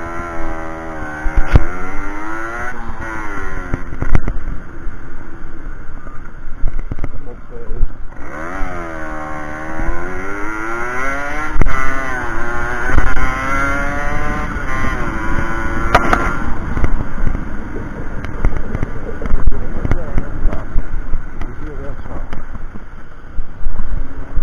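Single-cylinder 50 cc two-stroke engine of a 1992 Aprilia Classic 50 Custom moped revving up as the bike pulls away and accelerates, its pitch climbing, dropping back and climbing again with the gear changes, then running steadier near the end.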